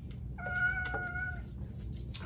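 A domestic cat meowing once in the background: a single long, level-pitched meow of about a second, starting about half a second in. The owner thinks the cat is upset.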